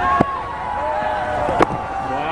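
Cricket ball knocking off the bat in a sharp crack about one and a half seconds in, as the batsman defends a delivery from a slow spinner, with a lighter click about a second before it. Faint voices sound in the background.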